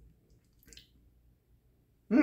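Near silence, with a faint short wet sound about two thirds of a second in from drinking water out of a plastic bottle.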